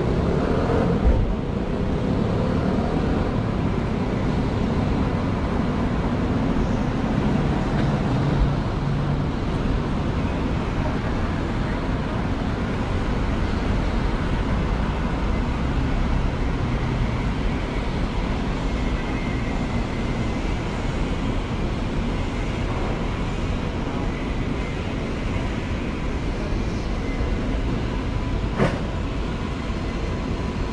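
Steady city street traffic: a continuous low rumble of passing vehicles, with a brief sharp click near the end.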